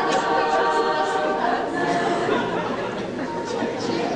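Children's choir singing long held chords, the notes changing about halfway through.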